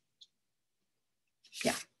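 A woman's voice in a pause of speech: near silence, then near the end a short, breathy "yeah".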